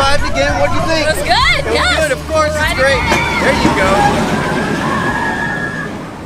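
Expedition Everest roller coaster on the move: riders' excited voices and shrieks over the rumble of the train. About halfway in the rumble fades and a steady high tone runs on until a sudden stop.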